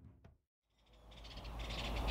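A music tail fades out to a moment of silence. Then faint outdoor background fades back in, with small birds chirping in quick repeated notes during the second half.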